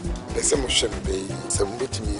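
A man speaking, with background music underneath.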